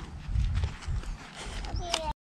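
Footsteps on dry dirt over an uneven low rumble, with a short call near the end.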